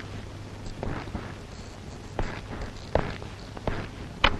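Footsteps of a man walking across a floor, a step about every three-quarters of a second from about a second in, over a steady low hum.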